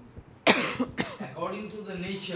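A person coughs close to the microphone: one loud cough about half a second in and a shorter one just after it, followed by speech near the end.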